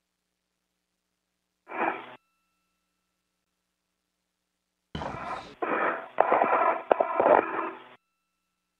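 Spacewalk radio loop, silent between transmissions. A brief burst of thin radio noise comes about two seconds in. At about five seconds the channel opens with a click and carries crackling noise and sharp clicks until the end.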